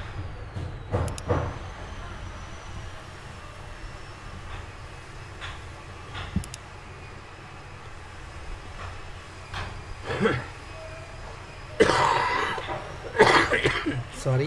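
Steady low background rumble from the recording room, with a few short noisy bursts about a second in and again near the end.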